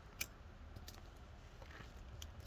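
Quiet background with a faint low rumble and a few small clicks, the sharpest about a quarter second in.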